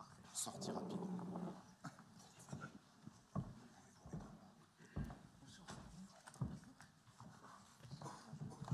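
Several dull thumps and knocks from people walking on a stage and sitting down in armchairs, under faint murmured voices.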